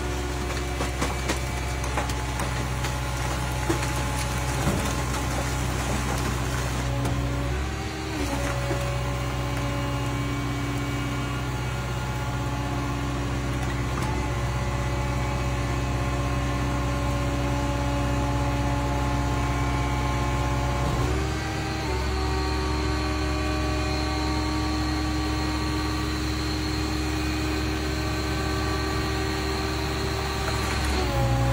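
Hydraulic power unit of a car crushing machine running with a steady hum, its pitch shifting about eight seconds in and again about twenty-one seconds in as the rams change load. Metal and glass crackle under the press during the first several seconds.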